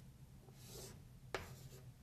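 Chalk writing on a blackboard, faint: a soft scratchy stroke, then a sharp tap of the chalk against the board a little past halfway.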